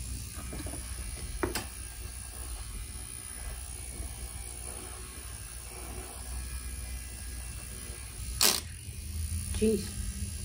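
Small battery-powered handheld fan running with a steady low hum, with two sharp clicks, the louder one near the end.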